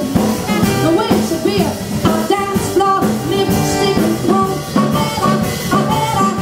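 Live band playing an instrumental passage: trumpet and trombone playing sustained lines together over piano, upright bass and drums, with a steady beat.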